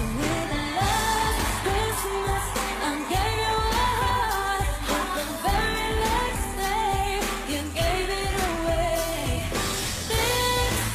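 A Christmas pop song playing: a singer carrying the melody over a full band accompaniment.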